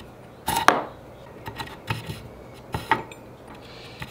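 Steel-shanked router bits being set into the holes of a plywood storage block, giving a few sharp metallic clinks. The loudest comes about half a second in and rings briefly; lighter clicks follow around two seconds and just before three seconds in.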